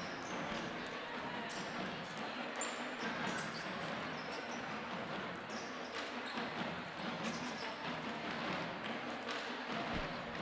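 Gymnasium crowd chatter with basketballs bouncing on the hardwood court during pre-game warm-ups, a steady hum of voices dotted with scattered short knocks.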